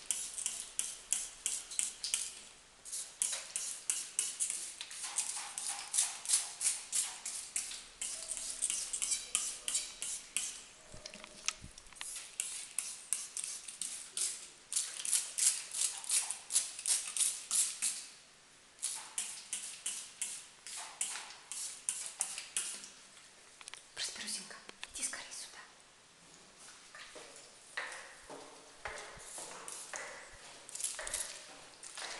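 Hand-pumped trigger spray bottle of water squirting onto a door, several quick hissing squirts a second in runs of a few seconds with short pauses between them.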